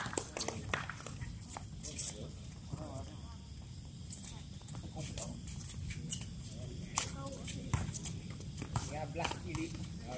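Scattered sharp taps and footsteps of volleyball players on a hard outdoor court between rallies, with faint voices of players talking.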